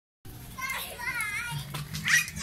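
Children's high-pitched voices calling out, wavering in pitch, starting a moment in. A steady low hum joins underneath near the end.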